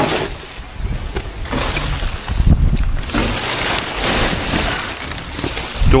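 Wind buffeting an action-camera microphone, with plastic rubbish bags rustling as they are pushed about and a pillow is pulled from a metal skip.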